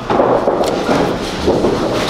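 Candlepin bowling alley din: a steady rumble and clatter of pinsetter machinery and balls on the lanes, with a couple of light knocks.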